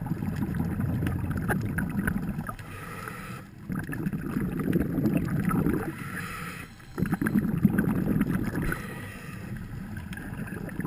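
Bubbles from a scuba diver's regulator on each exhale, heard underwater: three long bubbling bursts a few seconds apart, with short pauses between breaths.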